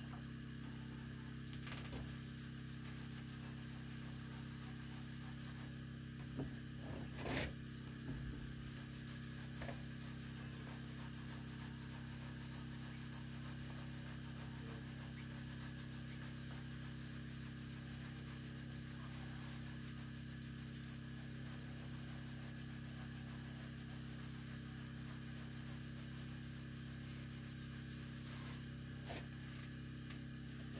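A cloth or pad rubbing over the textured cast-iron surface of a wood stove, as the stove's finish is worked over, with a few light knocks about a quarter of the way in. A steady low hum runs underneath.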